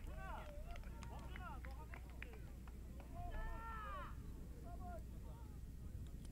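Faint, distant voices shouting and calling across an open football pitch, a longer call standing out about three seconds in, over a low steady hum.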